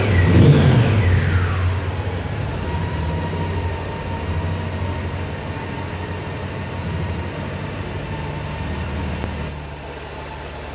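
Honda Gold Wing GL1800's flat-six engine revved once at the start, its pitch falling back to a steady idle. A thin steady whine sits over the idle.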